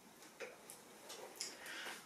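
A few faint, irregular clicks and a light rustle as a sheet of paper is handled and set down, with a soft intake of breath near the end.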